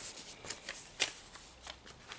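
Soft rustling of a ribbed silk knit fabric sample and its paper label being handled, with a few light clicks, the sharpest about a second in.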